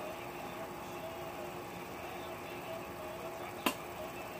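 Quiet, steady room hum with one sharp click near the end.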